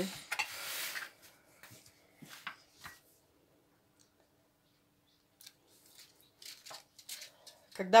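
Parchment-lined metal baking tray set down on a table: a short rustle of the baking paper and a few light knocks, then faint small clicks near the end.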